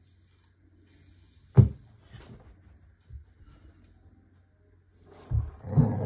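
A dog gives one sharp, loud bark about a second and a half in. Near the end it breaks into a longer run of growls and barks while it grabs and shakes a plush dinosaur toy.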